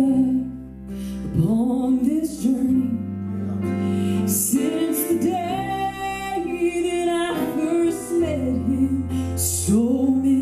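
Woman singing a slow southern gospel song, accompanied by acoustic guitar.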